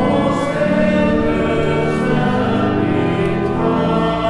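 Church pipe organ accompanying a congregation singing a hymn together, in sustained chords that change every second or so over a held low bass.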